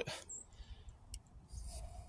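Quiet: a single faint click about a second in, a button press on a Celestron NexStar hand controller keypad while scrolling through its star list, over a faint hiss.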